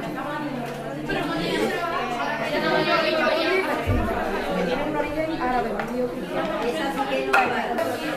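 Chatter of many students talking at once in a classroom, with a single sharp knock near the end.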